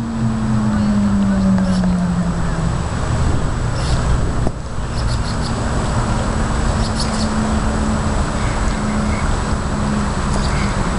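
Steady traffic noise, with a low vehicle-engine drone that slowly falls in pitch over the first few seconds and comes back about halfway through; a few short high ticks now and then.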